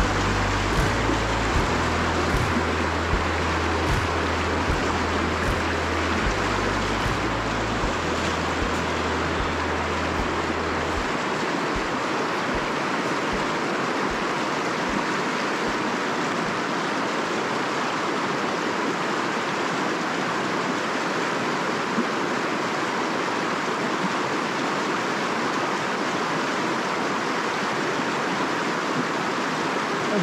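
A river rushing over a shallow, rocky riffle: a steady, even rush of white water. A low rumble runs underneath for the first third and stops about eleven seconds in.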